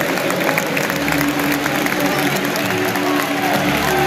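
Football crowd singing a chant together, the notes long and held, with scattered clapping through it.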